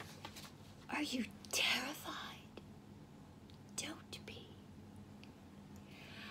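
A woman whispering, breathy and low: one short phrase about a second in and a brief one near four seconds.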